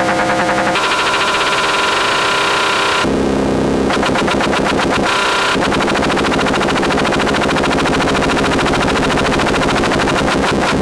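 Modular synthesizer drone, loud and harsh, with a fast rattling pulse running through it. Its timbre switches abruptly several times in the first six seconds, jumping between a pitched, buzzing drone and a brighter, noisier texture.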